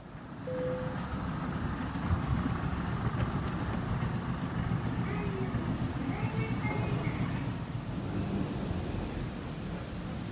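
Steady low rumble of airport terminal ambience heard while walking, with a few faint distant voices or tones.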